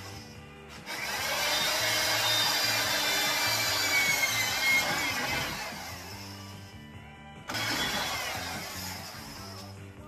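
Power drill boring holes through a snowmobile tunnel at the drop bracket: one long run starting about a second in, its whine dropping in pitch as it winds down, then a shorter run near the end. Background rock music with a steady beat plays throughout.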